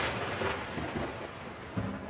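A logo-sting sound effect: a thunder-like rumble that fades away steadily, dying down toward the end.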